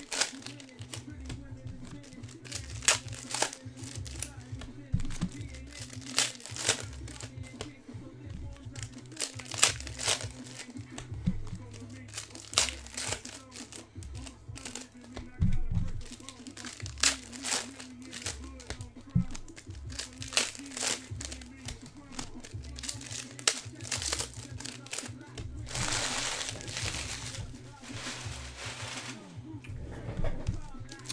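Trading-card pack wrappers crinkling and cards being handled, a string of quick crinkles and clicks with a longer rustling stretch near the end. Music plays underneath.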